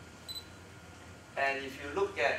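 A man's voice speaking in a small room, starting about one and a half seconds in after a quiet pause. A brief, faint high beep sounds about a third of a second in.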